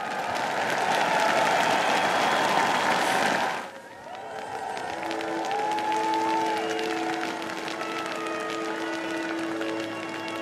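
Large crowd applauding and cheering, loudest for the first few seconds, then dropping off suddenly a little under four seconds in. The applause carries on more thinly while sustained music notes come in about five seconds in.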